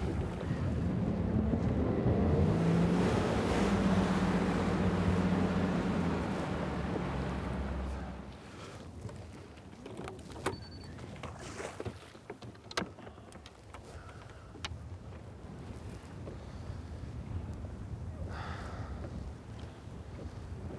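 Boat's outboard motor running under way with wind and water noise, its pitch rising slightly a couple of seconds in, then cutting off abruptly about eight seconds in. After that, light wind with scattered clicks and knocks on the boat.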